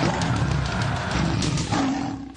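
A lion's roar sound effect over the opening music sting.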